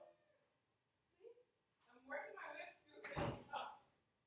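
Faint, indistinct voices with a single sharp thump about three seconds in.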